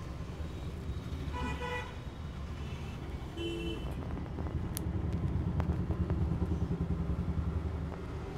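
Street traffic with car horns: two short horn toots, about one and a half and three and a half seconds in, over a steady low rumble of road traffic that swells past the middle. A few faint clicks follow.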